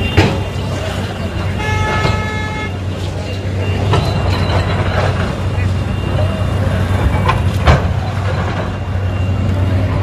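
Heavy diesel engine running steadily, with a vehicle horn sounding for about a second two seconds in. People's voices and a few sharp knocks come over it, the loudest knock about eight seconds in.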